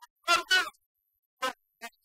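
A man's voice through the talk's microphone, heard only in short clipped snatches with dead silence between them.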